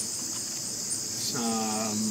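Steady, high-pitched chorus of insects. A man's voiced "uh" comes in near the end.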